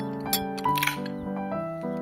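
Gentle piano music playing a melody of held notes. A short click about a third of a second in and a brief rustling rasp just after half a second cut across it.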